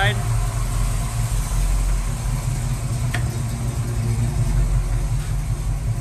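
Buick 350 V8 in a 1971 Skylark idling steadily, with its electric radiator fan and heater blower running. A faint click about three seconds in.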